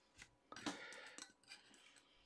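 Faint handling of trading cards: a few soft clicks and rustles, the loudest about half a second in.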